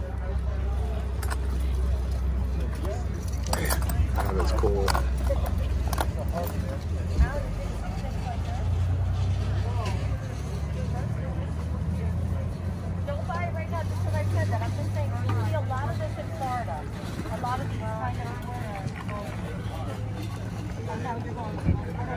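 Indistinct voices of people talking nearby, clearest in the second half, over a steady low rumble, with one sharp click about seven seconds in.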